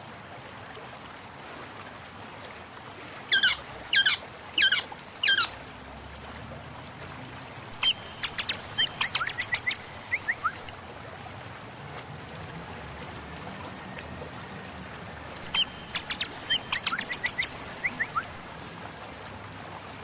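Birds calling: four short falling calls a few seconds in, then twice a quick run of chirps, over a steady background hiss.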